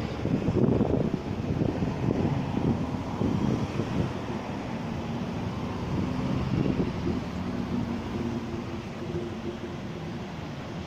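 Uneven low rumble of wind buffeting the microphone over the general noise of a construction site. A faint steady machinery hum comes through in the second half.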